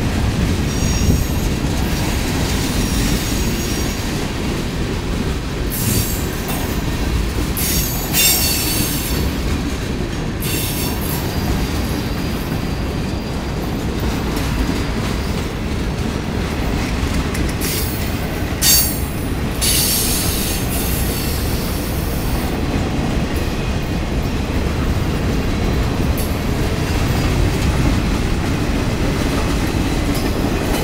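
Freight train's tank cars and boxcars rolling past at close range: a steady rumble and rattle of wheels on rail. Several times, notably about a third of the way in and again past the middle, wheels squeal briefly at a high pitch.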